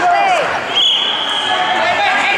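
Shouting from people in a gym, with a single steady high whistle blast lasting about a second starting just before the middle: a referee's whistle starting wrestling from the referee's position.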